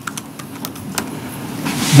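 Room noise in a pause between sentences of speech, with a few light clicks and a breath drawn in near the end, just before the talking starts again.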